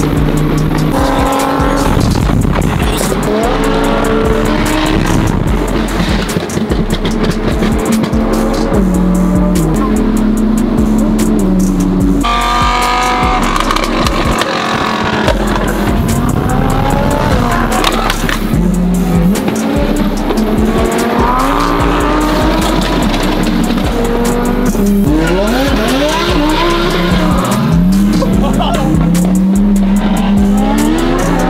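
Sports car engines revving and accelerating, with repeated rising sweeps in pitch near the end, under background music. The sound changes abruptly about twelve seconds in, as at an edit.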